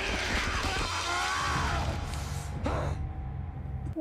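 Television drama soundtrack: a man's strained, wavering groan in the first second or so, over a low, steady music drone.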